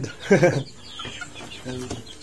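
Young chickens clucking in a box: a few short, quiet calls. They follow a louder brief voice-like call with a falling pitch about a third of a second in.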